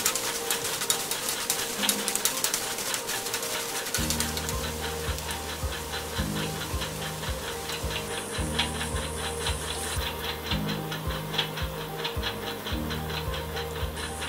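Fast, dense crackle of chopped onions frying in hot oil in an aluminium pan. About four seconds in, background music with a steady bass beat comes in over it.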